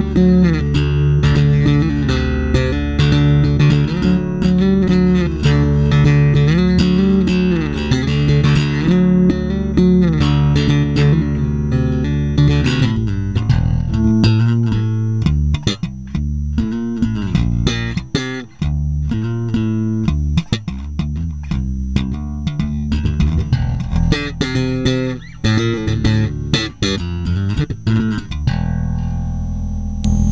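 Electric bass guitar (a Fender Jazz Bass) played through a bass preamp and compressor pedal. For the first dozen seconds it plays held notes with slides in pitch, then short, clipped notes with small gaps between them.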